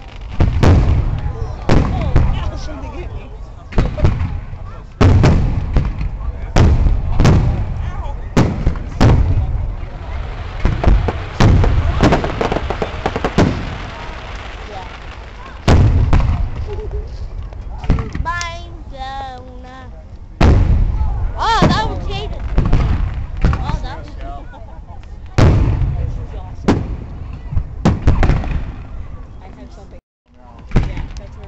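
Aerial fireworks shells bursting in quick succession, a loud bang every second or two with crackling between them, easing off briefly about two-thirds of the way through before the bangs resume.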